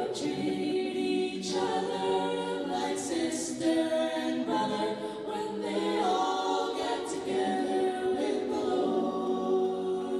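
A small choir singing a cappella in harmony, holding long notes.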